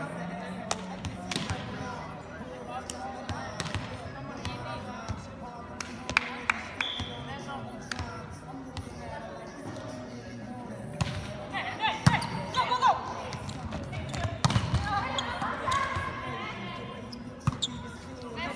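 Volleyballs being struck and landing during a practice drill: irregular sharp smacks, several seconds apart to a few a second, with women's voices calling out between hits.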